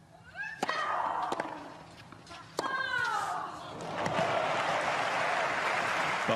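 A tennis rally: three sharp racket hits on the ball, two of them with a player's grunt that falls in pitch. From about four seconds in, the crowd applauds and cheers as the point ends.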